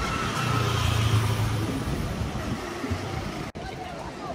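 A car passing on the street, its low engine hum and tyre noise swelling over the first two seconds within steady street noise. The sound drops suddenly a little after three and a half seconds in.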